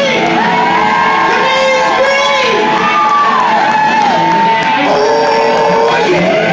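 Live blues music: a woman singing over a band, belting long held notes that bend in pitch.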